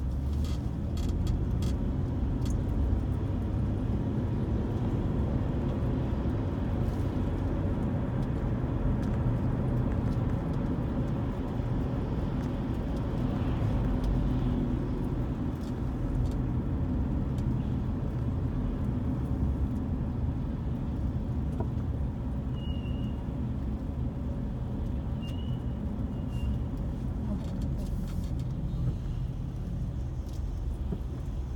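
Steady low road and engine rumble from a vehicle driving along a town street, swelling slightly about halfway through. A few short high chirps come in about two-thirds of the way through.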